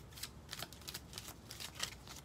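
Tarot cards being shuffled and handled by hand: a string of faint, irregular papery clicks and snaps.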